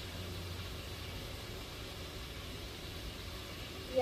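Steady low rumble and hiss of road traffic passing outside, with no distinct events.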